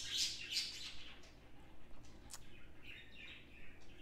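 A small bird chirping faintly, in short high-pitched bursts that are loudest near the start, with a couple of light clicks.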